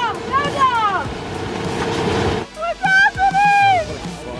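The electric blower of an inflatable cash-grab booth runs with a steady rush of air and a hum, and the rush stops abruptly about two and a half seconds in. Voices call out over it.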